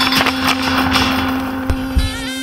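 Film soundtrack: a held low musical drone note carries on under a loud rushing swell of noise with many short crackles and clicks, easing off near the end.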